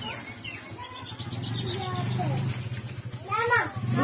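Children and women talking and calling in the background, over a steady low hum; a little after three seconds one loud, arching call rises and falls.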